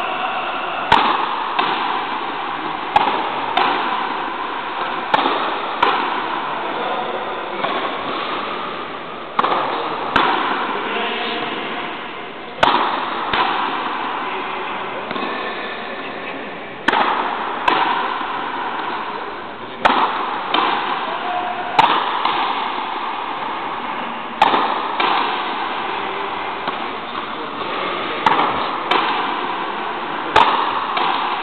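Frontenis rally: sharp smacks of rackets hitting the rubber ball and of the ball striking the frontón's front wall, about one every second or two, each ringing on in the hall's echo.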